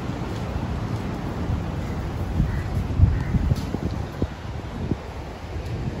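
Wind buffeting the microphone as a steady low rumble, with a few short thumps about halfway through.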